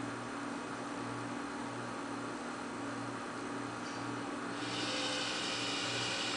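Minipa Smartman desktop robot arm and its controller giving a low, steady electrical hum under a hiss as the arm lifts a gripped cable. The hiss grows brighter and a little louder about four and a half seconds in.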